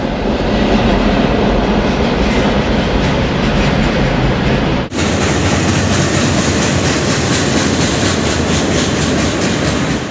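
Freight train boxcars rolling past in a steady rumble and clatter of wheels on the rails. About five seconds in, the sound cuts abruptly to a brighter, closer clatter with a faint regular clickety-clack.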